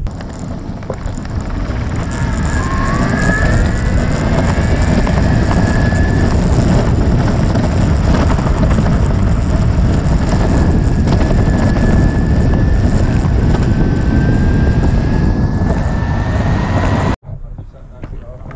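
Six-wheel electric skateboard riding on asphalt: a loud, steady rumble of its rubber wheels on the road mixed with wind noise, and a thin electric-motor whine that rises in pitch as it speeds up. The sound cuts off suddenly near the end.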